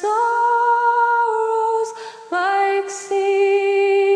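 A woman singing a slow hymn unaccompanied, holding long steady notes. There is a short breath about two seconds in, and then a new held phrase begins on a lower note.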